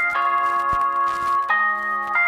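Background music of sustained bell-like chimed notes, the chord changing twice.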